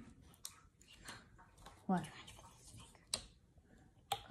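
Faint plastic handling and a few small sharp clicks as the screw cap of a small plastic bottle is twisted open. The loudest click comes about three seconds in.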